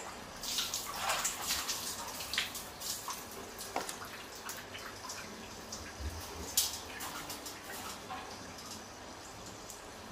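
Water splashing and sloshing in a plastic tub as a macaque bathes and plays in it, in irregular splashes and drips that are busiest in the first few seconds and thin out after, with one sudden sharper splash about six and a half seconds in.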